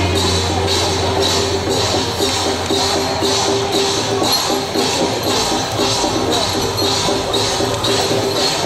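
Loud procession music with a fast, steady beat of about three metallic strokes a second over a held, sustained note.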